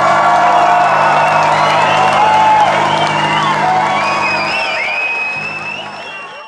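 A rock band's last chord rings out from the stage at the end of a song, held steady, while the crowd cheers with whistles and screams over it. The sound fades out near the end.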